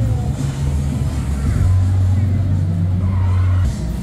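Cinema soundtrack over the theatre speakers: a deep, steady car-engine drone with music, stepping to a new pitch about a second and a half in and cutting off near the end, with faint voices above it.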